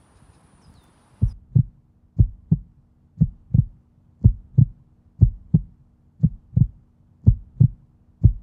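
Heartbeat sound effect: pairs of low thumps, lub-dub, repeating about once a second, starting about a second in over a faint steady low hum.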